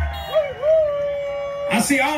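A long howl that scoops up in pitch and then holds steady for about a second, as a low bass note dies away just after the start. A man's voice starts near the end.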